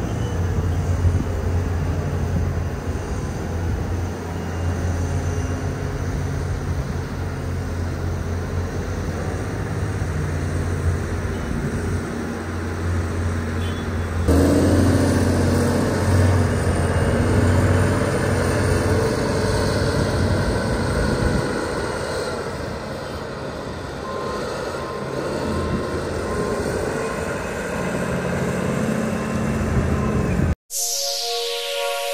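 Large diesel engines of heavy Caterpillar wheel loaders running steadily with a deep drone. About halfway through, the sound cuts to a louder mix of two loaders' engines working, with more rumble and mid-pitched engine noise.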